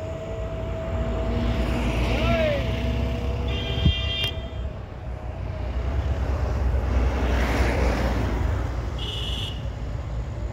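Road traffic: a steady motor-vehicle engine rumble, with a vehicle horn tooting briefly twice, about three and a half seconds in and again near the end.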